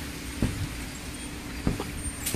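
Steady low background rumble with a few soft knocks from the camera and tools being handled while walking.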